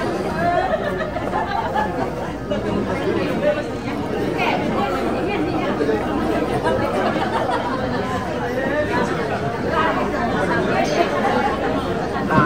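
Many people talking at once: steady, overlapping chatter of a gathered group of guests.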